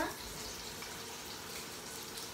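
Salmon frying in a skillet: a steady sizzle.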